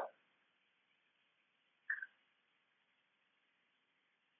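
Near silence: faint recording hiss, with one brief soft sound about two seconds in.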